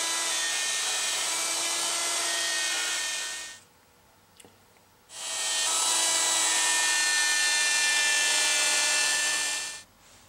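Handheld router running at full speed, cutting a P90 pickup cavity in a wooden guitar body through a template, with a steady high whine. It stops about three and a half seconds in, starts again about a second and a half later, and stops just before the end.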